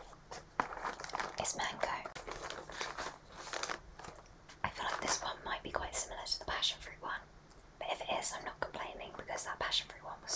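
A woman whispering close to the microphone, with a cardboard box handled near it, giving scattered sharp clicks and rustles.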